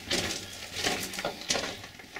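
Wings of small birds flapping as they fly off down a mine tunnel, mixed with crunching footsteps on the gravel floor; a few sudden rustling bursts roughly every half-second to second, with the echo of the tunnel.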